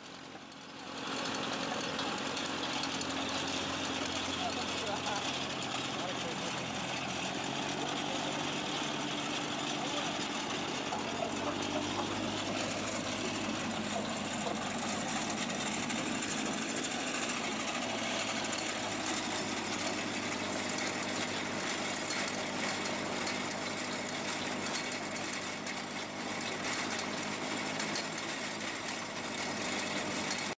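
Indistinct voices talking over a steady low mechanical hum, with no clear words.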